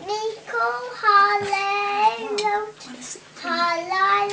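Children singing a Hebrew Passover Seder song together in a slow melody of held notes, with a short break about three seconds in.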